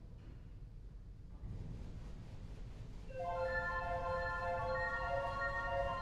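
A church pipe organ enters about three seconds in with sustained, steady chords, after a quiet start with only a low rumble.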